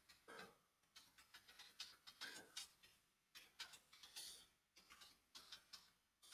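Faint computer keyboard typing: irregular key clicks coming in quick runs, several a second.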